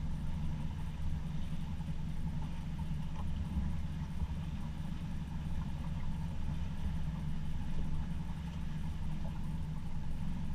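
A boat's engine running steadily at low speed, a constant low hum with no change in pitch.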